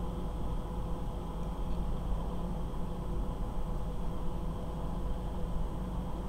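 Steady background hum and hiss, with no distinct clicks or handling sounds standing out.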